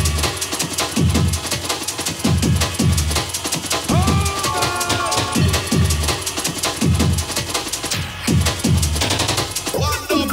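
An 8-bit jungle track playing from the OctaMED 4 tracker on an Amiga 1200's four-channel Paula sound chip. It has fast chopped breakbeats with deep bass hits that drop in pitch about twice a second, all sounding rough and gritty from the low-resolution samples. A held note sample comes in about four seconds in, and a rising sweep comes near the end.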